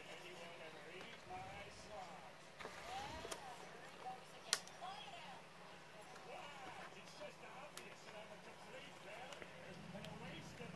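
Faint voices talking in the background, with one sharp click about halfway through.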